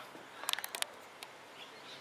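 A quick cluster of sharp clicks and taps about half a second in, from a handheld camera being handled and moved, followed by quiet background.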